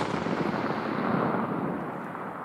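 The report of a .300 Winchester Magnum rifle shot rolling away as an echo: a dense rumble that fades slowly.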